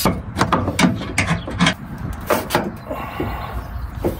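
Irregular plastic clicks and knocks from a Citroën C3's front bumper and its fasteners being worked loose by hand, over a steady low rumble.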